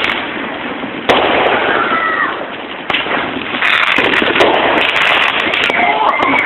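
Fireworks going off: a sharp bang about a second in and more near the three-second mark, then a dense run of crackling pops through the second half.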